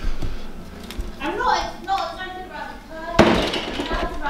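Voices talking in a room, then a single sharp thump about three seconds in, followed by a short rustling clatter.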